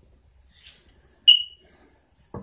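A single short, high electronic beep a little over a second in, fading out quickly.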